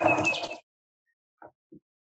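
A short breathy rush of noise into the microphone in the first half second, then silence broken only by two faint ticks.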